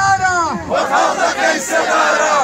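A crowd of protesters shouting slogans together, many voices at once.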